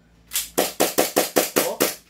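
SRC Hi-Capa 5.1 gas blowback airsoft pistol fired rapidly, a quick string of about ten sharp cracks, roughly six a second, starting about a third of a second in. The magazine's remaining BBs are being shot off to empty it.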